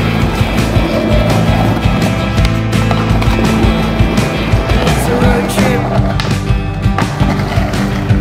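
Rock music track, the loudest sound, with a skateboard's wheels rolling and clacking on rough concrete beneath it.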